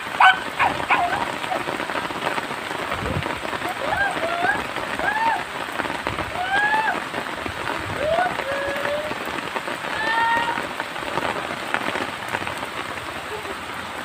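A steady hiss like rain falling, with a few short rising-and-falling whine-like calls between about four and ten seconds in.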